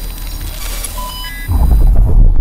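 Logo-intro sound design: a hiss of digital glitch noise with a few short electronic bleeps, then about one and a half seconds in a loud deep bass boom hits and keeps rumbling.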